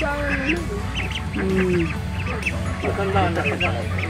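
A flock of domestic ducks quacking, many short calls overlapping and repeating throughout, with a steady low hum underneath.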